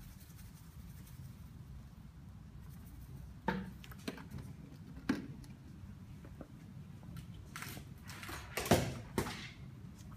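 A few light knocks from plastic pails and containers being handled on a workbench. Near the end comes a louder clatter of two or three sharp knocks as a shop sign falls off the shelving. A steady low hum runs underneath.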